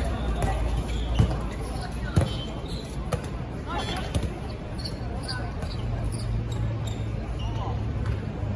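Dodgeballs striking the hard court surface and players in quick succession, several sharp hits in the first half, the loudest about a second in and another just after two seconds.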